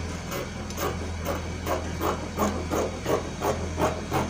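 Scissors snipping through doubled Ankara fabric: a steady run of about ten cuts, two to three a second, as a pattern piece is cut out along marked lines.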